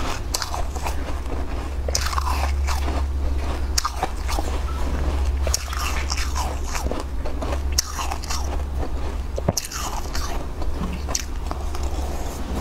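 Close-miked eating: repeated crisp crunching bites and chewing of a fluffy white food, over a steady low hum.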